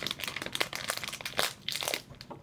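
Plastic candy bag crinkling as it is handled in the hands, a dense run of irregular crackles.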